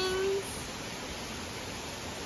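A drawn-out, steady high vocal note, the tail of a person's voice, cuts off about half a second in, followed by a steady even hiss.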